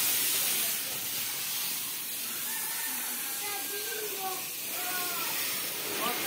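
Water spraying from a garden hose nozzle onto a car's radiator and air-conditioning condenser fins, a steady hiss.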